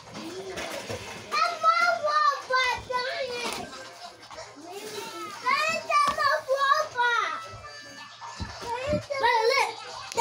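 Children's voices in the background, talking and calling out in high pitches, in bursts with short gaps, over a faint steady low hum.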